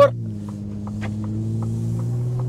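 Pickup truck engine heard from inside the cab while driving: a steady low drone that grows gradually louder, with a few faint light ticks.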